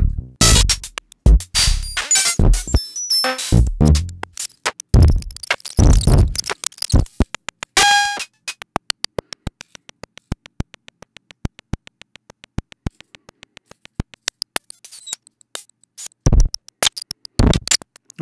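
Teenage Engineering OP-1 drum machine playing a sequenced beat on its D-Box synth drum engine, with the drum sounds jumping about under a random LFO. Loud kick-and-percussion hits fill the first eight seconds, then a single pitched hit, then only a fast, quiet run of hi-hat ticks, and the heavier hits return near the end.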